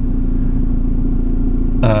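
Steady low hum and rumble of a car running, heard from inside the cabin.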